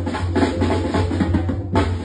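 Live Mexican banda music: drums and cymbals beating out a rhythm over a steady low tuba bass line, with a hard accented hit near the end.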